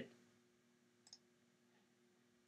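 Near silence with a faint steady hum, broken about a second in by a single faint click, as of a mouse button or trackpad.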